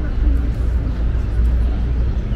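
Outdoor walking ambience: faint voices of passersby over a steady low rumble.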